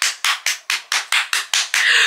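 A woman clapping her hands quickly and evenly, about six claps a second.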